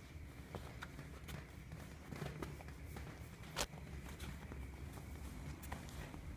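Domestic cat purring quietly as it is stroked, a steady low rumble, with scattered soft clicks and rustles of hand on fur; the sharpest click comes about halfway through.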